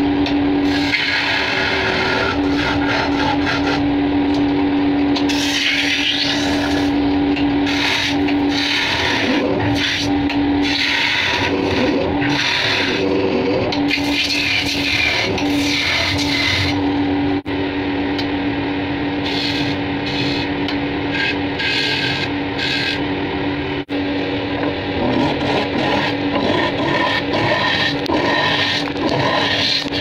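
Wood lathe running with a steady motor hum while a hand-held turning tool cuts and scrapes the spinning wooden blank in repeated strokes.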